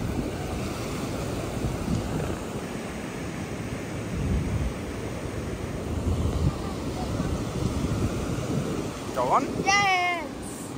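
Small waves washing in over a sandy beach, a steady rush of surf with wind buffeting the microphone in low gusts. Near the end a child's excited voice rises in pitch.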